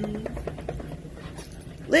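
Dogs playing together, with a quick run of short grunts and snuffling noises in the first second.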